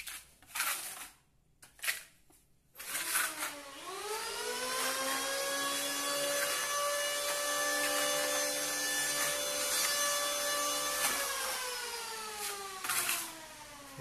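Cement being spread by hand on a rough wall, a few short scraping strokes in the first three seconds. Then a motor whine rises in pitch, holds steady for about six seconds and slowly falls again.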